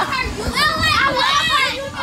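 Children shouting and squealing together while playing in an inflatable bouncy house, many high voices overlapping, with a woman laughing among them.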